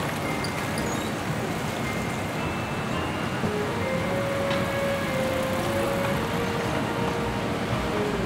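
Outdoor street ambience on a shopping street: a steady wash of traffic and street noise, with faint music.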